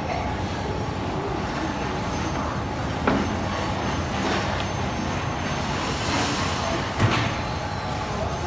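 Steady din of industrial bakery production-line machinery running, with two short knocks about three seconds and seven seconds in.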